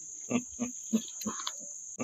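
A man laughing in short separate pulses, about six of them at roughly three a second, beginning about a third of a second in, over a steady high-pitched background hiss.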